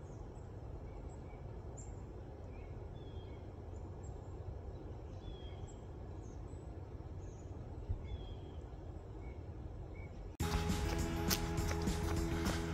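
Outdoor ambience: a steady low rumble with faint small-bird chirps scattered through it. About ten seconds in, music with a beat cuts in suddenly and is louder than the ambience.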